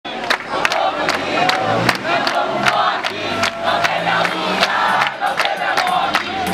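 A crowd of young protesters chanting and shouting together, clapping in time about two to three claps a second.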